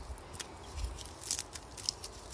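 Pruning snips cutting dead leaves and stems off a strawberry plant: three or so short, crisp snips spread across two seconds.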